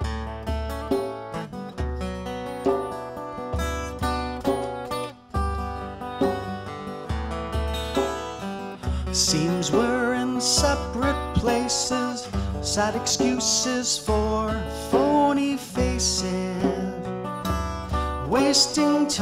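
Acoustic guitar played fingerstyle, with a djembe hand drum keeping time under it. Sharper percussive hits come in about halfway through.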